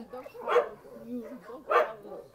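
Dogs barking, with two short, sharp barks about a second apart.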